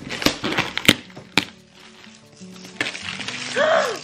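Crinkling and crackling of metallic plastic gift wrap being torn and handled on a box, with a few sharp crackles in the first second and a half, over soft background music.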